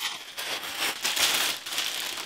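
Plastic mailer packaging and a clear plastic bag crinkling and rustling as they are pulled open and handled: a dense, irregular run of small crackles.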